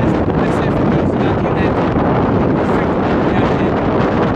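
Strong wind buffeting the microphone in a steady loud rumble, over choppy water splashing around a canoe.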